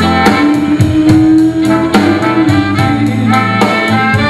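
Small live blues band playing: a horn section of trumpet, trombone and saxophone over drum kit, bass guitar and keyboard, with a long held note in the first half and a steady drum beat.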